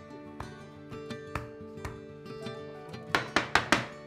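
Soft background music with sustained tones, and a quick run of four or five sharp clicks about three seconds in.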